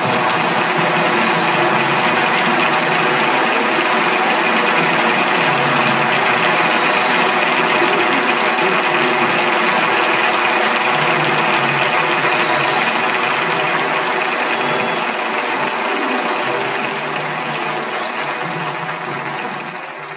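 Large audience applauding at the end of a live orchestral performance, a dense, steady clapping that thins out and fades away near the end.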